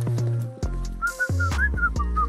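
A man whistling a wavering tune, starting about a second in, over background music with a steady beat.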